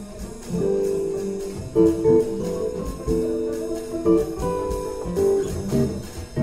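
Live small-group jazz during a double bass solo: plucked upright bass notes over light, evenly spaced cymbal strokes, with held chords in the middle range.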